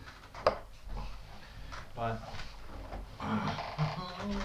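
Men's voices, a short word and some vocal sounds, with a single sharp click about half a second in that is the loudest sound.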